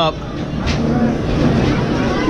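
Arcade din: a steady wash of game-machine noise and background voices, with a faint knock about two thirds of a second in.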